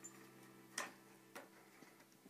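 Near silence broken by two short, faint clicks a little over half a second apart.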